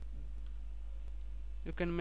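A steady low hum under a few faint computer mouse clicks; a man starts speaking near the end.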